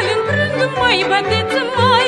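Romanian folk-band instrumental interlude: violins play an ornamented melody with wide vibrato over a low accompaniment that keeps a steady, even beat.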